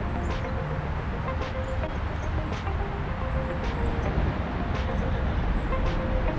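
Steady low rumbling noise, with faint ticks about once a second and faint held tones over it.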